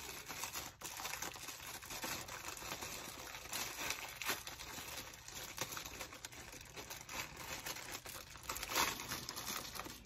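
Clear plastic packaging crinkling and rustling as an accessory packet is opened and the bagged items inside are handled, with many small crackles.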